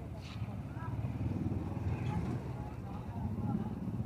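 Small motorcycle engine of a motorcycle-sidecar tricycle running close by, getting a little louder about a second in, with people's voices in the background.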